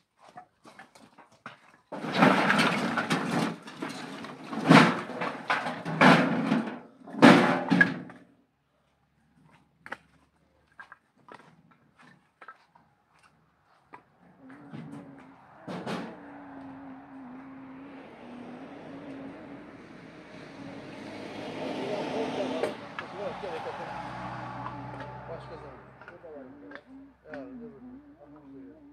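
Several loud, short voice-like shouts in the first few seconds. Later a motor vehicle engine passes, its noise swelling to a peak and fading away.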